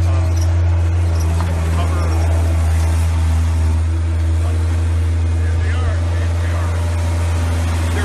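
Heavy diesel equipment engine running steadily, a deep, unbroken drone.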